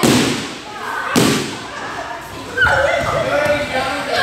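Two loud thuds on padded martial-arts floor mats about a second apart, from children diving and landing while dodging a swung foam-covered stick. Children's voices follow in the second half.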